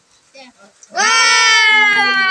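One long, high-pitched drawn-out vocal cry from a person, starting about halfway through and held steadily loud, its pitch slowly sliding down.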